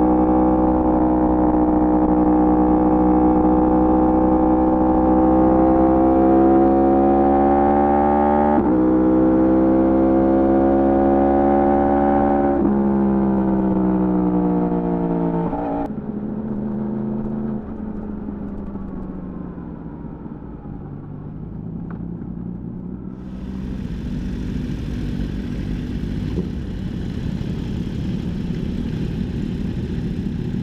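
Sport motorcycle engine running under way, its pitch creeping up, with a gear change about nine seconds in; from about halfway the pitch falls as the bike slows, with a downshift. In the last third, motorcycle engines run low and steady at walking pace.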